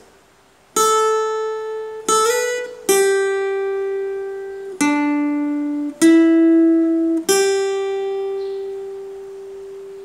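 Acoustic guitar playing a slow single-note melody picked with a plectrum: about six notes, each left to ring and fade, with a slide up to a higher note shortly after the second one and the last note ringing on.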